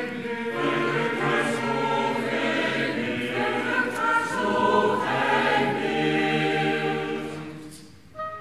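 Mixed choir singing a cantata passage with chamber orchestra accompaniment; the sound dies away over the last second.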